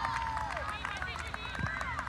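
Soccer players calling and shouting to each other in high, overlapping voices, with running feet and a dull thump about three-quarters of the way in.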